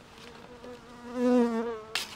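A flying insect buzzing close past the microphone: one buzzing pitch that swells to its loudest just past a second in, then fades with a slight drop in pitch. A short sharp rustle of banana leaves at the very end.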